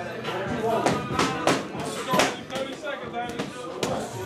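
Boxing gloves punching a large round hanging heavy bag: a handful of sharp thuds at uneven spacing, with voices talking underneath.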